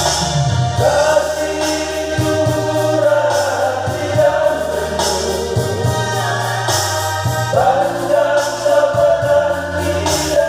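Men's vocal group singing a gospel song in harmony, with electronic keyboard accompaniment. The voices hold long notes, with a new phrase starting about a second in and again near eight seconds.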